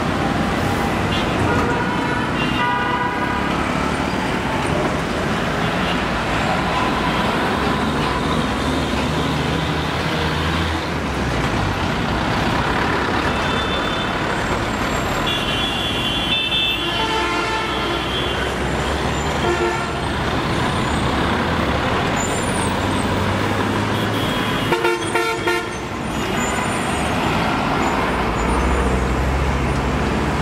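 Busy road traffic: cars, buses, trucks and auto-rickshaws passing with engines running, and vehicle horns honking several times.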